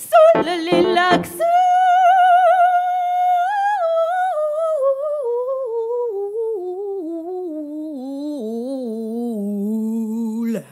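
A woman's voice singing wordlessly: a short choppy phrase at the start, then one long held high note that descends step by step to a low note near the end.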